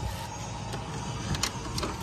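Hotel room door's electronic key-card lock releasing, with a few sharp clicks from the latch and handle as the door is pushed open.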